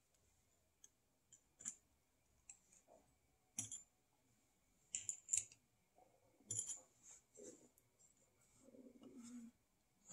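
Scattered light clicks of small metal screws and needle-nose pliers as screws are worked out of a plastic valve bracket, with near silence between them.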